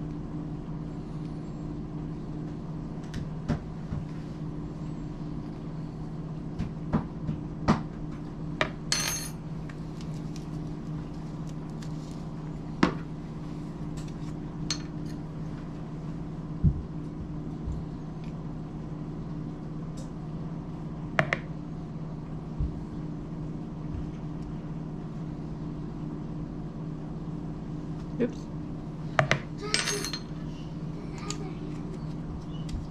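Scattered small clicks, taps and clinks of metal salt and pepper shakers and a measuring spoon being handled over a mixing bowl, with a short rattle about nine seconds in. A steady low hum runs underneath.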